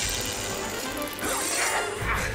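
Animated-cartoon soundtrack: chase music with crashing sound effects.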